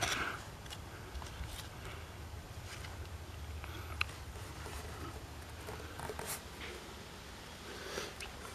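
Faint scratching and a few light ticks of a small hand tool digging into packed soil around a mineral piece, over a steady low rumble; one sharper tick about four seconds in.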